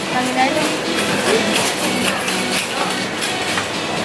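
Wire shopping cart rattling, its wheels clattering over a tiled floor as it is pushed along, with music and voices in the background.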